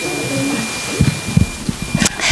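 A few low thumps and knocks about a second in, over faint murmuring voices and a steady high-pitched whine.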